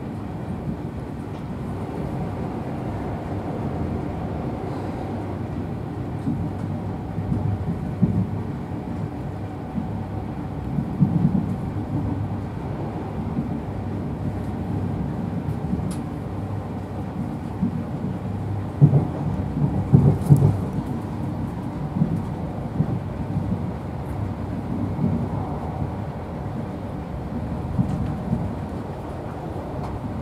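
Inside a moving InterCity 125 (Class 43 HST) Mark 3 passenger coach: the steady low rumble of the train running on the rails. Several louder knocks and bumps break through, the biggest cluster about twenty seconds in.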